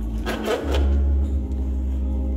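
Organ music with held chords over a deep sustained bass note that changes about half a second in.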